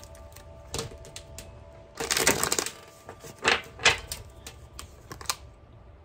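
Tarot cards being shuffled and handled: scattered short clicks and flicks of card on card, with a quick rattling run of cards about two seconds in.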